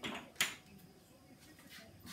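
A brief rustle followed by one sharp click about half a second in.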